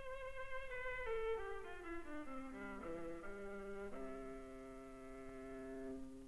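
A viola, almost 400 years old and made by Gasparo da Salò, played solo with the bow. It steps down through a slow descending phrase of notes, then holds a long low note from about four seconds in.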